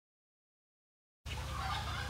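Silence for just over a second, then a faint outdoor background sets in abruptly, with a low steady hum and weak scattered sounds.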